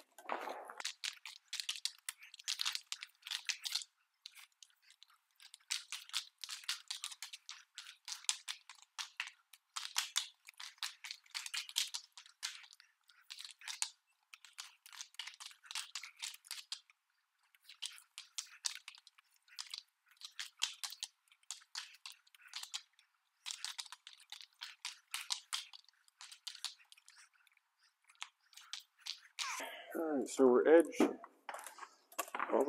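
Wet epoxy coating being worked across the concrete slab with a long-handled floor tool: a faint, crackly, crunching sound that comes in irregular bursts, a stroke at a time, with short pauses between.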